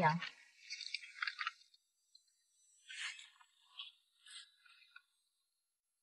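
A few short, scattered crunching rustles, each a fraction of a second, as a nylon-mesh folding cage-net trap is handled with gloved hands.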